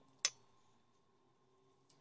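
A single sharp click of metal knitting needles about a quarter second in, then a fainter click near the end, over quiet room tone with a faint steady hum.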